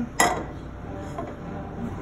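A single sharp metal clank just after the start, with a brief ring, as a small skillet is set down on the gas range's grate; then only steady low kitchen background noise.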